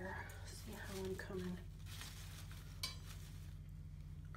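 Artificial flower stems and leaves rustling and scraping as they are handled and pushed into a table arrangement, with one sharp click about three seconds in.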